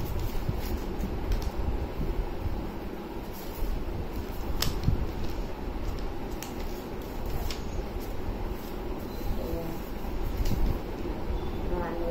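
Sheet of paper being folded and creased by hand on a plastic tray, giving a few sharp crinkles and taps over a steady low background hum.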